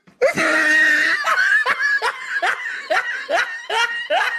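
A person laughing: a drawn-out first laugh, then a steady run of short 'ha' bursts, about two or three a second.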